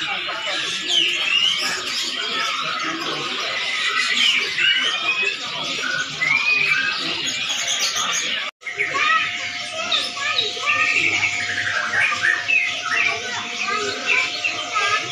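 Many small caged birds chirping and calling at once, over people talking in the background. About halfway through, the sound breaks off for an instant and comes back with a steady hum underneath.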